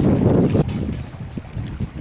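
Wind buffeting the microphone: a low rumble, strongest for the first half second, then easing off.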